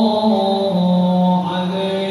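Islamic devotional chanting (sholawat) by a male voice: a slow, melismatic line of long held notes that slide and step down in pitch.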